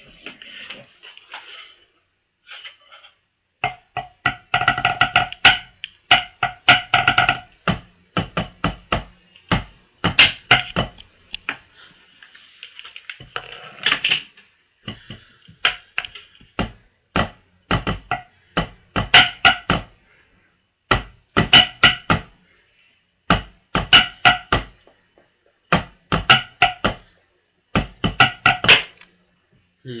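Tenor drum solo played with drumsticks on a tabletop drum pad: a few light taps, then from a few seconds in fast runs of strokes in bursts with short gaps. Each hit has a short pitched ring.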